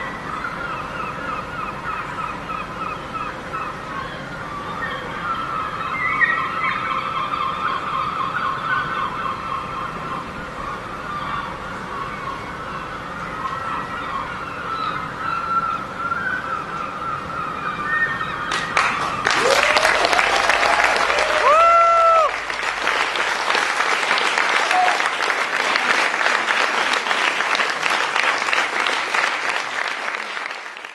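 Audience applause bursts in suddenly about two-thirds of the way through, with a few vocal cheers in its first seconds, and then fades at the very end. Before it there is a steady run of high, wavering, repeated call-like sounds.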